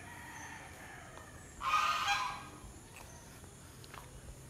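A farmyard bird calling: a fainter drawn-out call, then one loud call lasting under a second, about a second and a half in.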